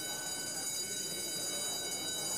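School bell ringing: one steady, high, unbroken ring.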